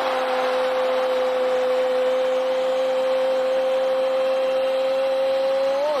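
A football commentator's long, drawn-out goal shout, "Goooool", held on one steady note for about six seconds over the crowd noise. It marks a goal just scored, and the pitch lifts slightly before the call breaks off near the end.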